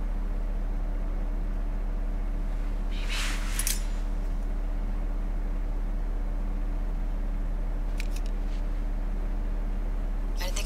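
A steady low drone, with a short hiss about three seconds in and a few faint clicks about eight seconds in.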